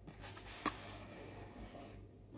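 Faint rustling of a cardboard shipping box being handled and lifted off the box inside it, with one short sharp tap about two-thirds of a second in.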